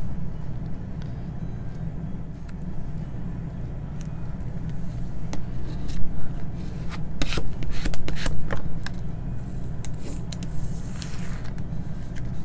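Rustling and scraping of vinyl stencil film and transfer tape being peeled and rubbed down onto a painted wooden block, with scattered light clicks and knocks. A steady low hum runs underneath.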